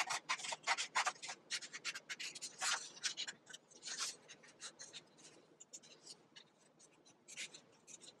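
Scissors snipping through a paper template, a rapid run of short crisp cuts at about four or five a second for the first four seconds, then slower and quieter cuts.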